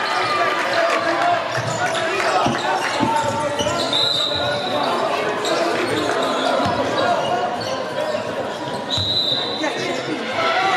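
Indoor basketball game ambience in a large hall: a basketball bouncing on the wooden court a few times and sneakers squeaking sharply twice, over a steady babble of players' and spectators' voices.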